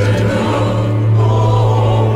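Ghanaian gospel song sung in Twi: choir voices singing over a steady, deep bass note.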